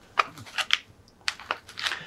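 Small scale-model rifle magazines being picked out of a foam insert in a cardboard box: a run of irregular light scuffs and clicks.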